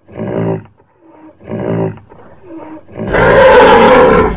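Animal roar sound effect: two short growls, then a longer, louder roar starting about three seconds in.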